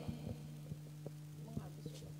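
Steady low electrical hum from the audio setup, with a few faint clicks from something being handled.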